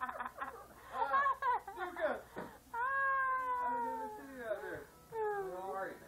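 A long drawn-out cry, held for about a second and a half and sliding slowly down in pitch, about three seconds in, then a shorter falling cry, amid talk.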